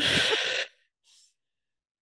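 A woman's short, breathy exhale, a sigh amid laughter, lasting under a second.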